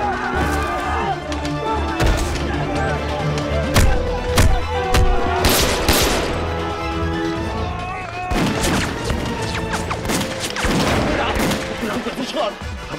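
Film battle soundtrack: scattered pistol and rifle shots and short volleys of gunfire, with men shouting, over dramatic background music.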